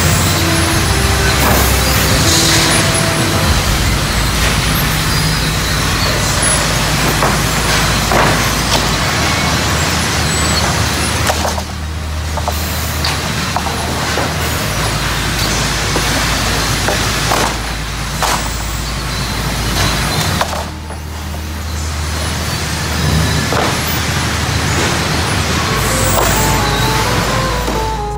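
Loud, steady sawmill machinery noise from a chain transfer conveyor carrying sawn cottonwood boards, with frequent knocks and clatter of the boards on the chains.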